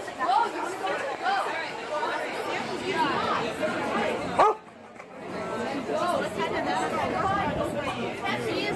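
People talking and crowd chatter, with a dog barking a few times among the voices. The sound breaks off briefly about halfway through.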